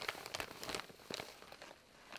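Faint crinkling rustle of a quilted nylon bag being unfolded and handled, mostly in the first second and then fading.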